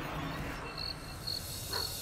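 Crickets chirping as night ambience: short, high, evenly spaced chirps about twice a second, starting about half a second in, over a steady background hiss.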